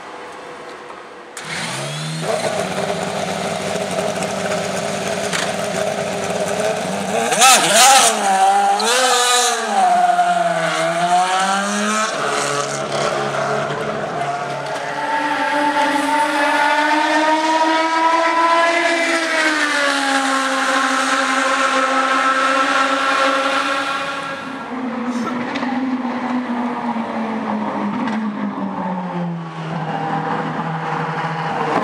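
IndyCar V8 racing engine firing up about a second and a half in and running at a high idle, blipped in quick revs a few seconds later. It then pulls away, its note rising steadily, then falling and settling lower.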